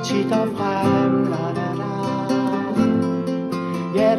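Acoustic guitar strummed steadily under a man's singing voice holding the notes of a line of a Danish folk-style song.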